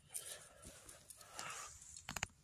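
Faint rustling of dry leaf litter and twigs as a hand reaches in among them on the forest floor, with a few soft clicks.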